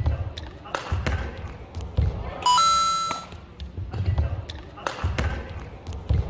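Badminton rally: sharp racket hits on the shuttlecock and players' feet thudding on the court, echoing in a large hall. A loud, high squeal lasts most of a second about two and a half seconds in.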